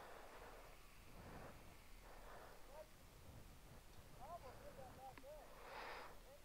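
Near silence, with a few faint short rising-and-falling pitched calls around the middle.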